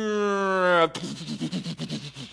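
A man's voice imitating a fighter plane in attack. First comes a held, engine-like drone that falls slowly in pitch for about a second, then a rapid run of mouth-made machine-gun shots, about ten a second.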